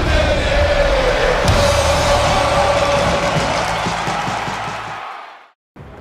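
A channel-ident sting for a logo transition: a loud, dense music swell with a held middle tone over a low drone, which fades out about five seconds in.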